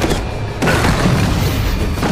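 Anime battle soundtrack: dramatic music layered with booming magic-attack sound effects, swelling again about half a second in.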